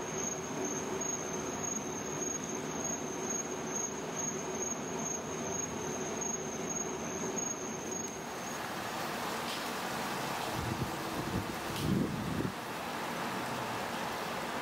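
Steady ambient background noise with a thin, high, steady whine through the first eight seconds. After a change about eight and a half seconds in, the background continues with a few low rumbles around eleven to twelve seconds.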